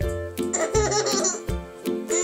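A baby laughing over a backing of children's music.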